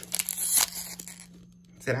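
A Pokémon TCG booster pack's foil wrapper being torn open by hand: a crinkly rip, strongest about half a second in, that dies away after about a second.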